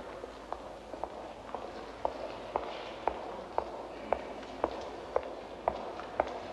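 Even, unhurried footsteps on a stone floor, about two steps a second, over a faint steady background hiss.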